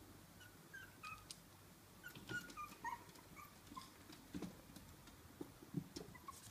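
Small dogs whimpering faintly: a string of short, high-pitched whines from about a second in to about four seconds in, with a few soft clicks.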